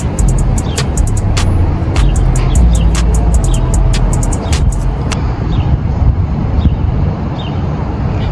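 Bass-heavy background music with a low rumble of street noise, and a run of sharp clicks in the first five seconds. Faint birds chirp in the second half.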